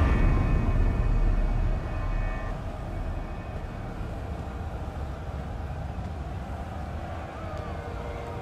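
A deep, low rumble, loudest in the first two seconds with a faint ringing tone over it that fades out, then settling into a steady low drone.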